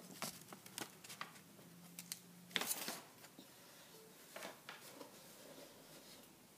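Faint rustling and small clicks of things being handled close by, with a louder rustle about two and a half seconds in. A faint low hum runs under it and stops at about the same moment.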